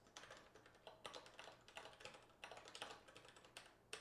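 Faint typing on a computer keyboard: quick runs of keystrokes with short pauses between them, as a line of code is typed.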